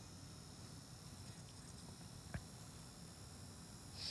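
Near silence: faint room hiss, with one small click a little past halfway.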